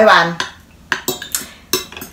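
A metal fork clinking against a bowl of salad a few times, short sharp clicks as food is picked up.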